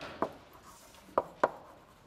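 Chalk striking a blackboard while writing: four sharp taps, in two pairs about a second apart, with faint chalk scratching between them.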